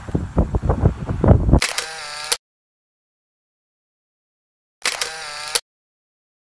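About a second and a half of irregular knocks and rustling on the microphone, then a short edited-in camera-shutter-style sound effect played twice, about three seconds apart, with dead silence between and after.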